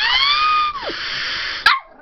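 Pomeranian puppy barking in a high, whiny yelp: one long call that rises and then falls in pitch, with a breathy edge. A single sharp click comes near the end.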